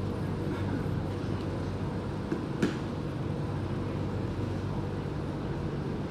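Steady low hum of an Alstom Metropolis C751C metro train standing at the platform with its doors open, with one short click about two and a half seconds in.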